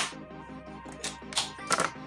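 A makeup brush tapped a few times against the edge of a plastic eyeshadow palette to knock off excess powder, giving sharp clicks over background music.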